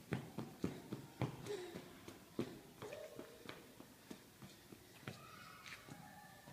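A toddler's quick, uneven footsteps in shoes on a hard polished floor, sharp little clicks that come thickly at first and then thin out.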